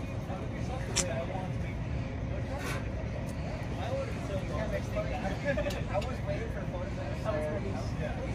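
Faint background chatter over a steady low street rumble, with a couple of light clicks.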